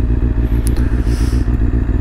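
Kawasaki ZZR600 sport bike's inline-four engine idling steadily.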